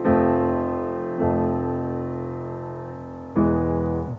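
Piano playing an F major chord, a right-hand triad over a left-hand bass note on the root. It is struck three times, at the start, about a second in and again near the end, each strike left to ring and fade.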